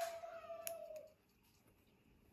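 Small scissors snip twice, about two-thirds of a second apart, cutting a doll's eyebrow hair, over a woman's held hum that fades out about a second in.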